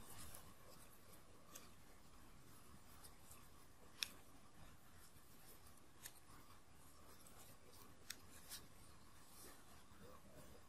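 Near silence, with a few faint, short clicks of a crochet hook working yarn in single crochet; the clearest click comes about four seconds in.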